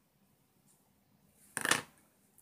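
Near silence, then about a second and a half in, one short, sharp rustle of paper and scissors being handled on a tabletop.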